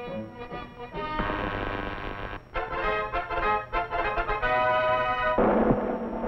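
Orchestral fanfare music with brass notes and timpani in short, punchy phrases. About five seconds in, a dense, noisy sustained sound swells in over the music.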